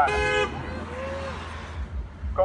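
A man's voice holding the last drawn-out word of a sentence for about half a second, then a steady outdoor background hiss with no clear voice or other event in it.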